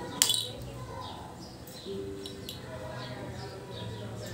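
Birds chirping, short high falling chirps repeated over and over, with one sharp, brief burst about a quarter second in that is the loudest sound.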